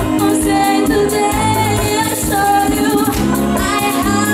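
Live dance band playing a bachata: a singer's melody over electric bass, drums and a steady beat of high percussion.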